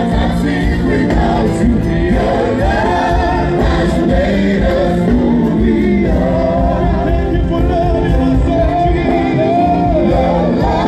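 Live gospel worship music: a group of singers on microphones sings over electronic keyboard accompaniment, steady and loud.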